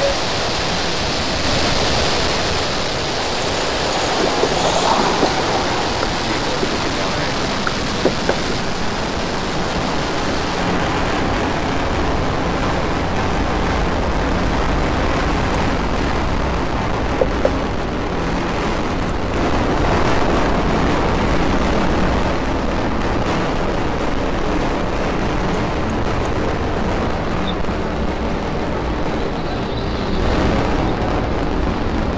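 Steady hiss at first, then, about halfway through, the deep rumble of a Falcon 9 rocket's nine Merlin engines arrives across the distance and builds, heard well after liftoff as the rocket climbs.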